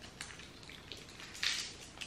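Small candy wrappers crinkling as they are unwrapped, with a louder, short rustle about one and a half seconds in.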